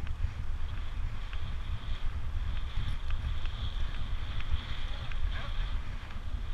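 Wind buffeting the microphone of a handlebar-mounted camera on a road bike moving fast, a gusty low rumble, with a fainter steady hiss of the tyres on tarmac.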